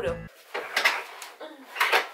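A room door being handled as someone goes out: two short clunks about a second apart.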